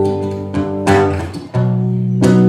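Acoustic guitar being strummed, with a fresh strum about a second in and a new, fuller chord just past halfway.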